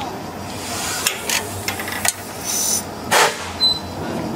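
A series of short hisses and a few sharp clicks from the valve gear of a 1910 National stationary gas engine as its controls are worked by hand, the loudest hiss about three seconds in.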